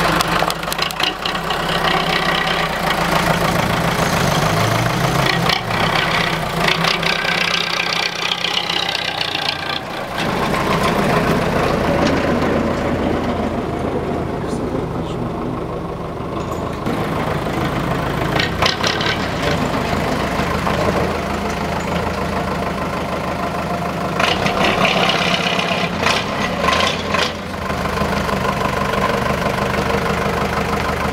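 A tow truck's diesel engine idling steadily, with people talking over it at times.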